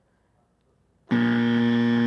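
Quiz timer's time-up buzzer sounding once, starting about a second in: a loud, steady electronic buzz held for about a second that cuts off abruptly. It marks the end of the time allowed for the question.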